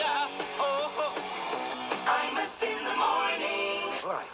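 A comedy song parody: a singing voice over a guitar-backed rock accompaniment.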